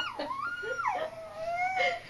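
Baby's high-pitched, drawn-out squeals and coos, each gliding up and down in pitch, several in a row, while being played with.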